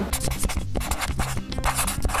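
Intro jingle: music with low bass notes under a scratchy pen-on-paper writing sound effect, a quick run of scribbling strokes.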